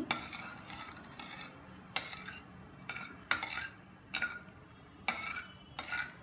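Metal ladle stirring milk and sugar in a metal kadai, knocking and scraping against the pan about once a second with a soft rubbing in between.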